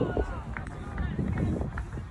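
Indistinct chatter of nearby spectators, with a few short clicks.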